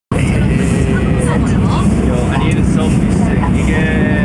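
Subway train running, heard from inside the carriage as a loud, steady low rumble. Voices are heard over it.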